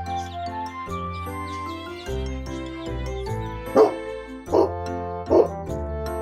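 Background music with a light melody; about four seconds in, a dog barks three times in quick succession, under a second apart.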